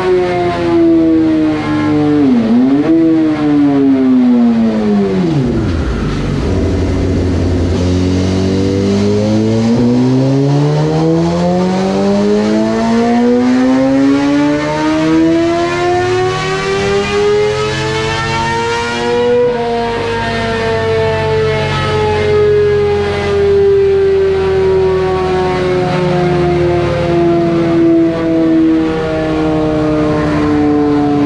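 2006 Suzuki GSX-R750 inline-four, fitted with an M4 slip-on exhaust, running on a chassis dyno. The revs dip twice and then fall away. One long wide-open-throttle pull follows, rising steadily in pitch for about ten seconds. The throttle then closes and the revs wind slowly down.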